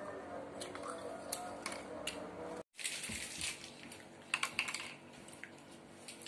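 Faint background music for the first two and a half seconds, cut off abruptly. Then quiet room sound with a few light clicks and crinkles of snack packets and gummy candy being handled over a plastic tray.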